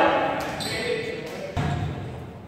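A volleyball bounces once on the hardwood gym floor about one and a half seconds in, with a short echo, amid scattered voices in the gym.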